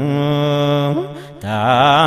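A man chanting an Islamic religious poem: he holds one long, level note for about a second, lets it fade into a short breath pause, then comes back in with a wavering, ornamented melody.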